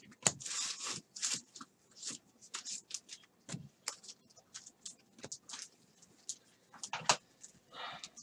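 A stack of baseball cards flipped through by hand: quick, irregular flicks and slides of card against card, with a longer sliding rustle about half a second in.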